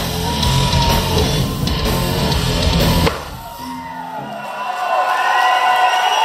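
Live heavy rock band playing loud, with distorted electric guitars and a drum kit, then stopping abruptly about three seconds in as the song ends. The crowd noise that follows grows louder toward the end.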